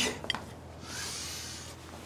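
A few light clicks of a serving spoon against a steel pot, then a soft scraping rub as food is ladled onto plates.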